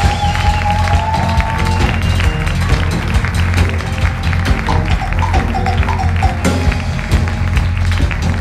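Big band rhythm section vamping a steady bass and drum groove. Over it a trumpet holds a long high note that rises slightly and stops about two seconds in. A few short horn phrases come in around the middle.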